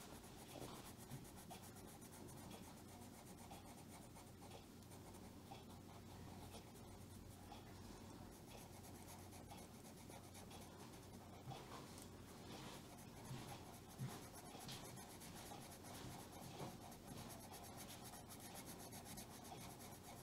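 A colored pencil shading over marker-coloured colouring-book paper: faint, steady scratching of many small back-and-forth strokes.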